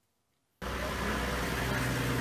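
A vehicle engine idling steadily under outdoor background noise, cutting in suddenly about half a second in after near silence.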